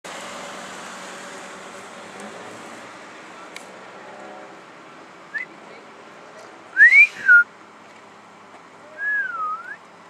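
A person whistling in short phrases: a brief rising note, then a loud whistle that rises and drops, then a wavering whistle near the end.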